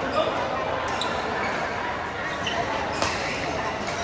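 Badminton rackets striking a shuttlecock, a few sharp hits spaced about a second or more apart, over a steady background of voices in a large sports hall.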